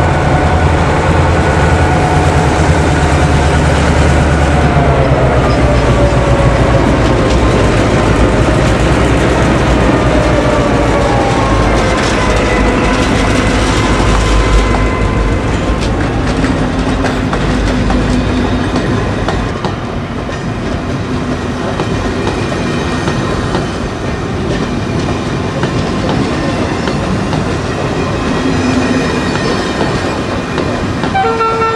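A pair of 1962 CIÉ 141 class diesel locomotives, B141 and B142, with EMD two-stroke engines, running under power as they pass, their engine note falling as they go by. After that, the coaches roll past with wheel clickety-clack over the rail joints, quieter than the locomotives.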